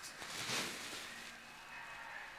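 Quiet small-room tone with one faint, soft rustle about half a second in.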